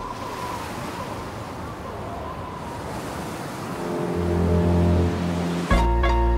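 Ocean surf washing. A low sustained musical chord swells in about four seconds in, and a sudden hit comes just before the end.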